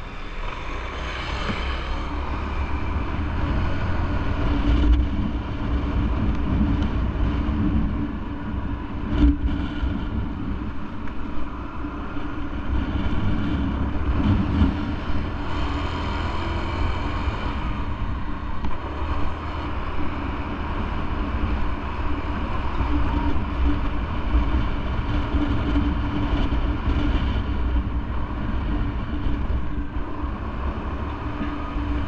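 Motorcycle running under way through city traffic, a steady low engine and road noise that rises and dips a little with the throttle.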